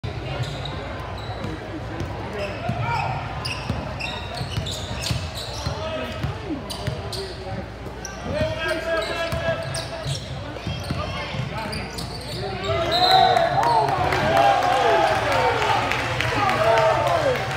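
Basketball being dribbled on a hardwood gym floor, with short high squeaks and the voices of players, coaches and spectators calling out, the shouting louder over the last few seconds.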